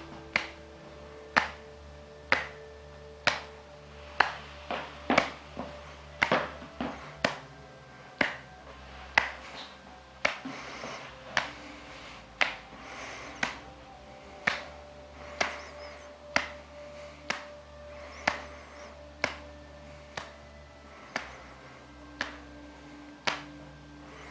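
Fingers tapping the back of the head in the qigong 'beating the heavenly drum' exercise, palms pressed over the ears: a steady run of short sharp taps, about one a second, some two dozen in all.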